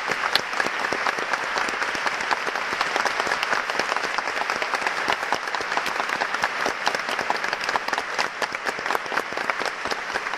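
Concert-hall audience applauding steadily: the clatter of many hands clapping.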